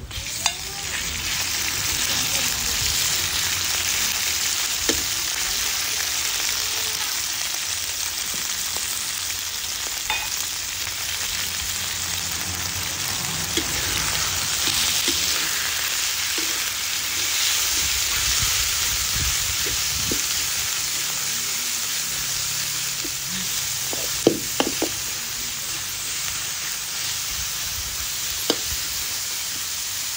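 Sliced raw beef sizzling in a hot wok with garlic, the sizzle jumping up as the meat goes in at the start and then running steadily. A metal spatula stirs it, with occasional sharp clicks and scrapes against the wok, a few together about 24 seconds in.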